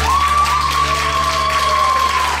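Audience applauding and cheering as a song ends, with one long high-pitched cheer held for about two and a half seconds over the last low note of the backing track.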